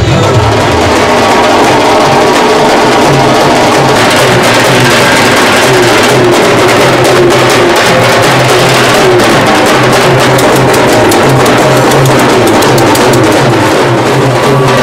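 Street procession drum band of bass drums and snare drums playing a loud, steady rhythm, with a wavering melody line over the drums.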